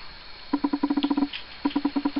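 Model class 47 diesel locomotive running along the track with its coaches, giving a rapid ticking rattle, about a dozen ticks a second, in two short spells.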